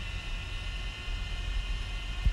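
Quadcopter camera drone hovering overhead, its propellers giving a steady whine made of several even tones, over a low rumble.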